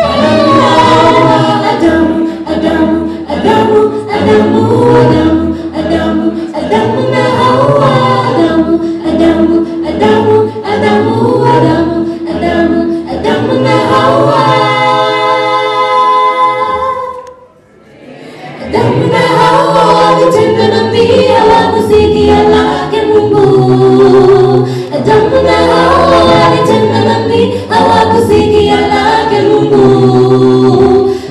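A mixed a cappella vocal group sings a gospel song in parts through microphones, with no instruments. A long held chord breaks off about seventeen seconds in, and the voices come back in after a pause of about a second and a half.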